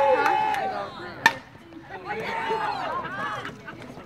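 A baseball bat hits a pitched ball once, a single sharp crack about a second in. Spectators' voices and a held shout come before it.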